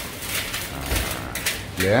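Coarse salt scattered by hand into a large copper basin, the grains pattering on the metal bottom in a few short spells.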